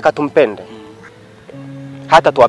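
A man's voice speaking briefly in the first half second, over soft background music with steady held notes that run on after the speech stops.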